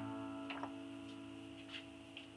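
Acoustic guitar strings left ringing and slowly dying away, with one soft plucked note about half a second in and a few faint ticks after it.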